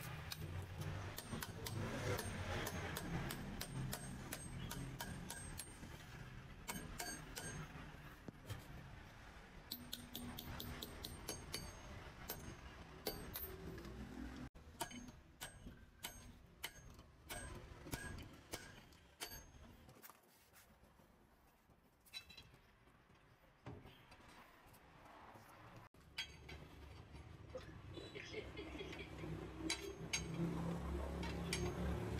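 Scattered metallic clicks and clinks of a wrench and steel parts being worked on a truck's rear wheel hub. They come thickly in the first half and more sparsely later, with a quieter stretch after the middle.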